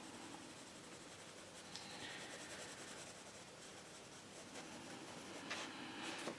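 Derwent Inktense pencil shading on paper: a faint, steady scratching of pencil lead rubbed back and forth.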